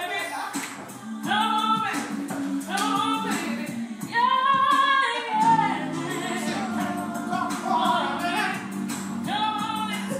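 Singing with musical accompaniment: sung phrases throughout, over held low backing notes that get fuller about halfway through.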